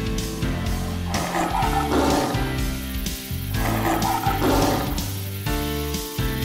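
Background music of held chords.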